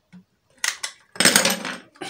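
Hard plastic clicks and clatter from a multi-socket extension strip being snapped shut and handled: two sharp clicks about half a second in, then a louder, longer clatter in the second half.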